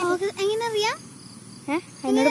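A young girl's high-pitched voice, calling out with rising and falling pitch for about a second, then a brief sound near the end, over a faint steady high-pitched hum.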